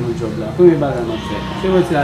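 A man's voice speaking in dialogue, most likely in Haitian Creole; speech only.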